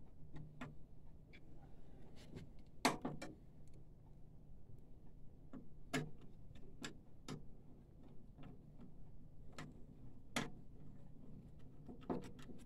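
Scattered clicks and taps of plastic and metal printer parts being handled and fitted by hand with a screwdriver, with a few sharper knocks, the loudest about three seconds in and near the end, over a faint steady low hum.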